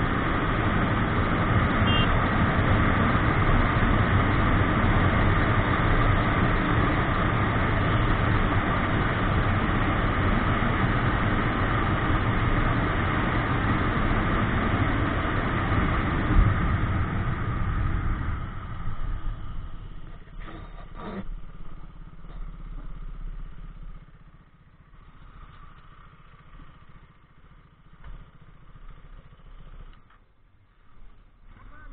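Motorcycle riding at speed, its engine running under heavy wind and road noise on the bike-mounted microphone. About two-thirds of the way through it slows and stops: the noise falls away, leaving a low engine hum that dies out a few seconds later.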